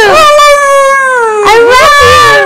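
A loud howl: one long drawn-out note falling in pitch, then a second long note beginning about one and a half seconds in.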